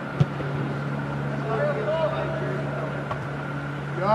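A soccer ball kicked once, a single sharp thud just after the start, over a steady low hum, with faint shouts of players about halfway through.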